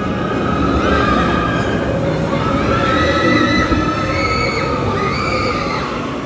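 Riders on a TRON Lightcycle Run roller coaster train screaming as it speeds past, several long overlapping screams over the noise of the train.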